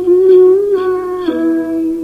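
Tày then folk music: a long held melodic note with a hum-like tone that steps down to a lower held note a little past a second in.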